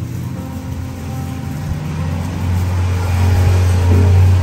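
A deep, low rumble that builds over about two seconds and is loudest near the end, over faint background music.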